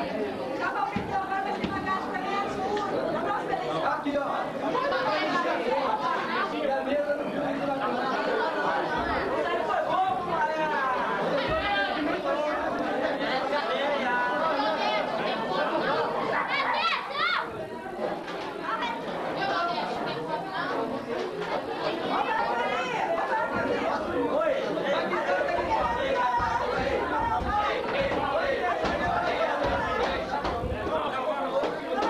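Several men talking over one another, a steady babble of overlapping conversation with no single voice standing out.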